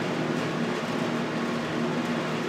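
Steady hum and hiss of a window air conditioner running.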